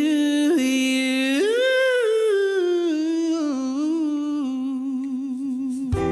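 A male lead vocalist singing an unaccompanied vocal line: a held note, a leap up to a higher note about a second and a half in, then a long run sliding back down with vibrato.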